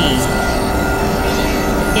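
Experimental synthesizer drone and noise: several steady held tones over a dense hiss, with no beat.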